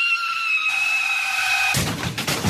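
Car tyres screeching under hard braking: a high, steady squeal lasting about a second and a half, slowly sliding down in pitch. Near the end a sudden, broader noisy hit cuts in, the start of a crash.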